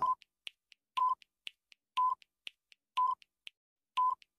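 Quiz countdown timer sound effect: a short beep once a second, with faint clock-like ticks about four times a second in between, counting down the seconds.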